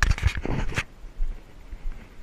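Footsteps crunching through dry leaf litter and grass, loudest in the first second, with low rumble from the moving camera.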